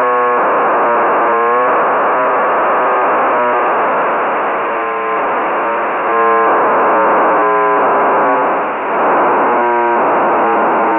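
HuskySat-1's UHF telemetry beacon received on an amateur radio receiver in sideband mode: a steady hiss of receiver noise with the satellite's buzzy, synthetic-sounding data signal breaking through in repeated short bursts, some bending in pitch.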